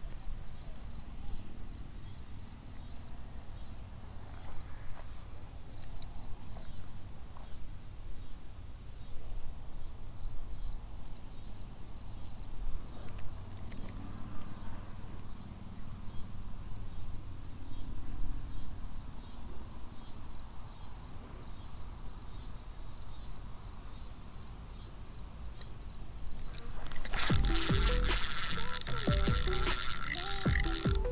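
Insects chirping steadily outdoors, about four short high chirps a second, over a low wind rumble. About 27 seconds in, a much louder dense rattling burst takes over.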